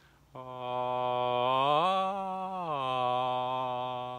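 A man's voice singing one long held vowel as a vocal warm-up glide. It starts on a low note, slides up nearly an octave about halfway through, holds there briefly, then slides back down to the low note and holds.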